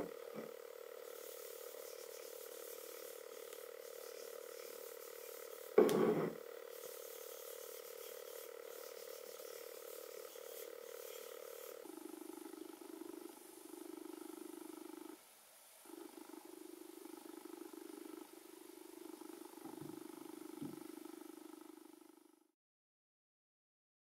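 A faint steady hum that drops to a lower pitch about halfway through and breaks off briefly a few seconds later. Two brief, louder knocks come at the start and about six seconds in.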